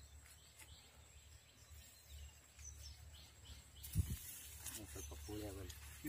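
Faint outdoor ambience: a steady low rumble with a few small bird chirps, broken by one sudden thump about four seconds in. Men's voices start near the end.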